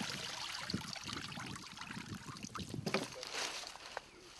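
Liquid splashing and sloshing in a plastic bowl as a bundle of pineapple suckers is dunked into a fungicide and insecticide dip, mostly in the first second, followed by faint knocks and rustles of the leafy suckers being handled.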